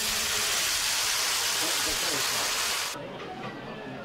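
Steam hissing steadily from a dumpling steamer, cutting off abruptly about three seconds in.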